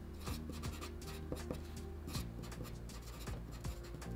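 Felt-tip marker writing on paper: a run of short, irregular scratchy strokes, faint, over a low steady hum.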